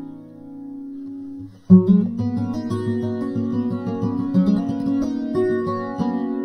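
Background music on acoustic guitar. A held chord fades away, then about two seconds in the guitar breaks into a quick run of plucked notes.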